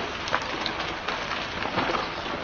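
Snow avalanche pouring down a mountainside: a steady, even rushing noise with a low rumble, like heavy rain or distant thunder.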